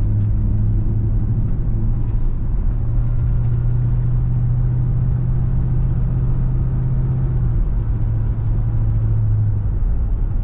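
Car driving along a street: steady engine hum and tyre road noise. The engine's low hum steps up in pitch a few seconds in and drops back near the end.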